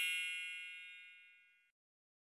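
Fading tail of a bright, high-pitched chime sound effect that rings down to nothing within the first second and a half or so.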